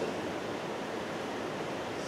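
Steady, even hiss of room tone with no other sound in it.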